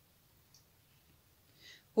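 Very quiet room tone, with one faint click about half a second in and a soft brief hiss near the end.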